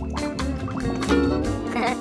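Bubbling and gargling of water in a bowl as a face is pushed into it, over cheerful background music.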